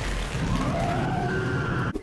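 A loud, harsh Titan roar from the anime soundtrack over a heavy rumble, its pitch rising and falling around the middle and then held high, cut off sharply at the end.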